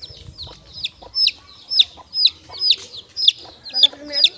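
Young chicks held in a hand, peeping loudly and repeatedly: short, high calls that each fall in pitch, about three a second. These are the distress peeps of chicks being handled.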